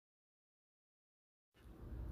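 Near silence: the sound drops out completely, with faint room hiss coming back near the end.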